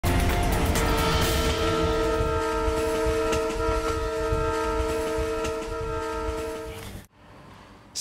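A train horn sounding one long chord over the rumble and clatter of a moving train, cutting off suddenly about seven seconds in.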